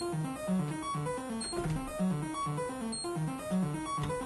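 Modular synthesizer played by a step sequencer: a short looping pattern of staccato electronic bass notes with high blips above, repeating about once a second.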